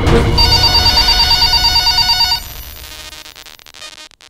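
Electronic telephone-ring sound effect: a trilling ring that starts about half a second in, runs for about two seconds and stops sharply, leaving a fading echo.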